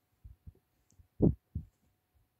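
A few short, dull low thumps, the loudest about a second and a quarter in with another just after: handling noise from the phone knocking and rubbing against a soft bedspread.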